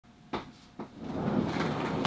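Two sharp knocks about half a second apart, then a building rustle and scrape of a person getting down and sliding along the floor.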